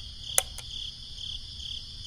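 Night-time cricket chirping, a steady high trill, with one short sharp click a little under half a second in and a fainter click just after.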